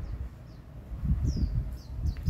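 A small bird chirping: about three short, high notes, each falling in pitch, over a low rumble.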